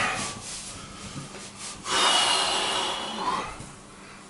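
Bath towel rubbed briskly over the body: a swish at the start, lighter scattered rubbing, then a louder, longer rub from about two seconds in that lasts over a second.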